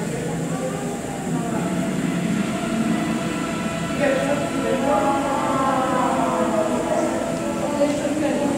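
Indistinct voices over a steady rumbling hum, with the voices growing clearer from about halfway through.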